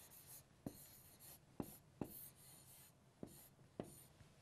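Faint scratching of a marker writing and drawing boxes on a board, in short strokes broken by about five light taps of the marker tip.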